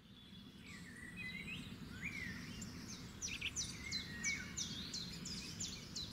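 Birds chirping over a low, steady outdoor rush that fades in at the start; a few scattered calls at first, then a quick run of short falling chirps, about three a second, from midway on.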